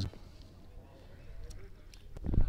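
Faint open-air ambience of a grass-field football match: distant players' voices, a low rumble and a couple of faint clicks near the end.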